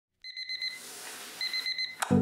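Bedside electronic alarm going off: two bursts of rapid high-pitched beeps, the second starting about a second and a half in.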